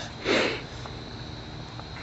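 A single short breath noise close to the microphone, about a quarter second in, lasting about half a second.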